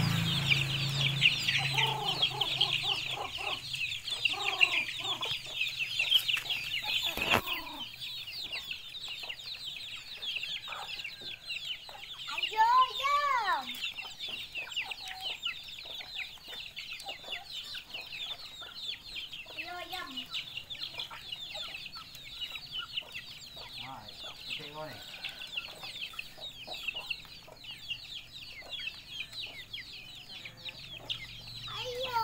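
A flock of chickens clucking and calling over constant high-pitched peeping from young chicks, the peeping loudest in the first several seconds. About thirteen seconds in comes one louder call that rises and falls.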